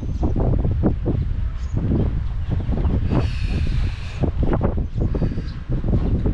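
Wind buffeting the camera's microphone: a loud, steady low rumble broken by irregular gusts. A brief high-pitched sound rises over it about three seconds in and lasts about a second.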